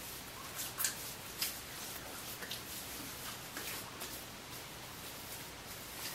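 Hands rubbing and patting liquid aftershave onto the skin of the face and neck: faint rubbing with a few soft pats, the clearest about a second in and again half a second later.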